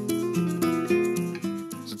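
Two acoustic guitars playing plucked, changing notes, with a shaker ticking lightly along.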